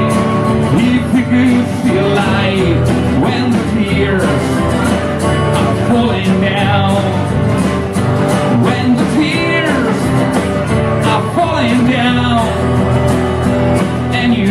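Live acoustic music: a man singing into a microphone over strummed acoustic guitars, with a steady beat.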